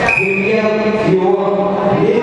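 Voices chanting together in long, held notes that change pitch in steps, like a sung liturgical chant.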